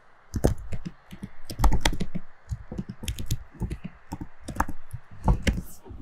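Typing on a laptop keyboard: an irregular run of quick key clicks as a few words are typed.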